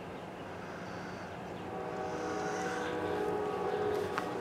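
Distant Norfolk Southern diesel locomotive air horn sounding a held chord of several notes, coming in faintly about halfway through and growing louder as the train approaches, over a low rumble.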